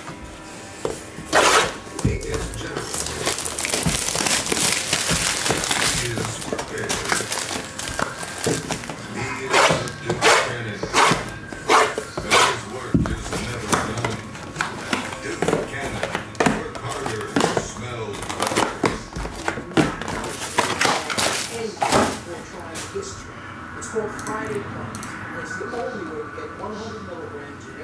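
Plastic shrink wrap crinkling as it is torn off a sealed Bowman Sterling trading-card hobby box, then the cardboard mini-boxes set down one by one into a stack: a run of sharp knocks, most of them between about ten and twenty-two seconds in.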